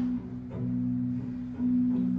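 Electric guitar through a small amplifier, holding sustained low notes that ring steadily, picked again about a second and a half in.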